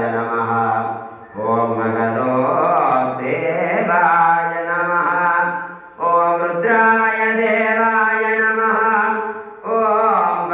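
A Hindu temple priest chanting mantras in long, held notes during puja. He breaks briefly for breath about a second in and again about six seconds in.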